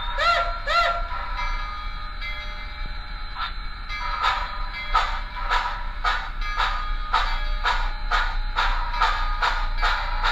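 Sound decoder in a model steam locomotive (SoundTraxx Tsunami2 TSU-1100 in a Blackstone C-19) giving two short whistle toots. From about three and a half seconds in, steam exhaust chuffs follow at about two a second as the locomotive moves off.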